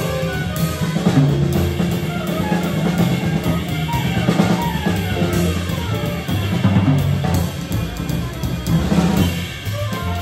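Jazz quartet playing live: drum kit, electric keyboard, trumpet and bass together.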